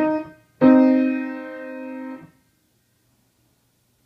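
Yamaha piano playing a minor third for an ear-training quiz. The upper note of the melodic interval sounds briefly at the start. About half a second in, the two notes are struck together as a harmonic minor third and held for about a second and a half before being released and cut off.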